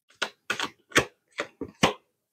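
A deck of tarot cards being shuffled by hand, the cards slapping together in about seven short, sharp strokes.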